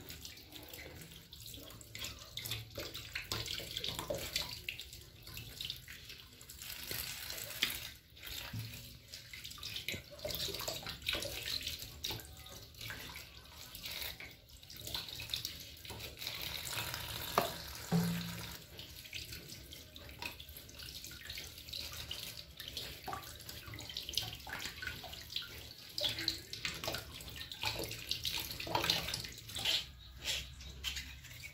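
Water running from a kitchen tap and splashing into a stainless steel sink, with many small irregular splashes as vegetables are washed.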